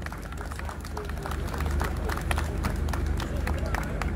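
A crowd clapping and applauding, with many irregular hand claps, over a steady low rumble.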